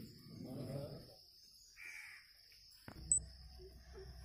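Quiet outdoor pause: a faint voice trails off at the start, then a crow caws once about two seconds in. Near the end comes a sharp click and a brief high chirp.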